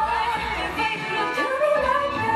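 A woman singing live into a microphone, holding notes that waver and slide in pitch, over instrumental backing.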